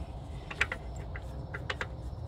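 Scattered light clicks and taps from hands and a cloth working inside a car's throttle body while it is wiped clean, over a low steady rumble.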